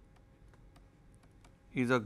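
A series of faint, irregular clicks and taps of a stylus on a pen tablet as handwriting is written, followed near the end by a man's voice starting to speak.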